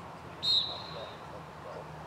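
A single short whistle blast about half a second in, one clear high note that fades over about half a second, from a soccer referee's whistle.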